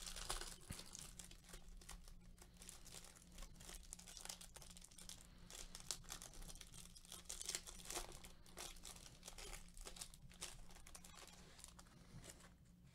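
Faint crinkling and rustling of a clear plastic card sleeve and trading cards being handled in nitrile-gloved hands, in many short irregular rustles.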